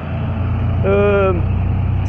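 Road traffic crossing the intersection: a steady low engine rumble from passing vehicles.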